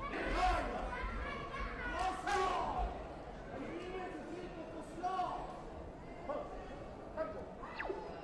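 Several voices shouting and calling out over one another, echoing in a large hall, loudest in the first few seconds.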